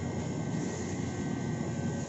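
Steady droning hum and rushing noise with a faint, even high whine and no distinct events.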